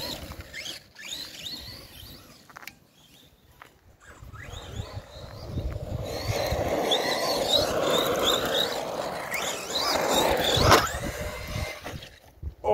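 Arrma Big Rock RC monster truck's electric motor whining in short revving bursts, rising in pitch, as the truck drives and spins its wheels on grass with its front wheel jammed in the grass. A sharp knock is heard near the end.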